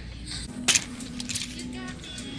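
Plastic clothes hangers clacking and sliding on a metal clothing rail as shirts are pushed aside: one sharp clack, then a run of lighter clicks.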